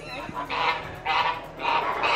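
Domestic goose honking: a run of about three harsh honks, roughly half a second apart.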